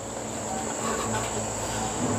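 Cricket chirring: a steady high-pitched trill over a faint low hum.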